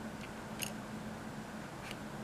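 A few small, faint clicks of wire leads being pushed and wiggled into a plastic solderless breadboard's sockets, over a steady low hum.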